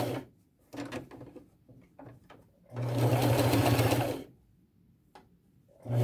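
Electric sewing machine stitching in short runs. It stops just after the start, sews again for about a second and a half in the middle, then gives a brief burst near the end, with faint clicks and fabric handling in the pauses.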